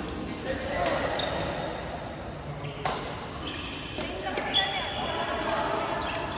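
Badminton rackets striking a shuttlecock in a doubles rally: about four sharp hits, one to two seconds apart, with sneakers squeaking on the court mat, all echoing in a large hall.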